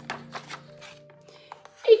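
A picture-book page being turned by hand: a few short, soft paper rustles over quiet, steady background music. A woman's voice starts reading near the end, the loudest sound.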